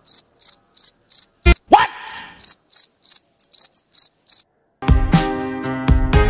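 Insect chirping, high-pitched and even at about three chirps a second, with two sharp thumps about a second and a half in. The chirping stops after about four seconds, and music with heavy beats starts near the end.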